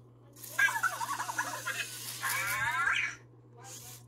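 Anki Cosmo toy robot making its chirpy electronic vocal sounds: warbling, fast-changing beeps for about two and a half seconds, ending in quick rising sweeps.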